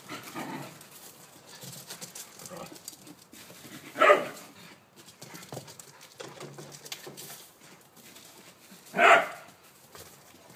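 A whippet barking twice during play: two short barks about five seconds apart, over quieter rustling.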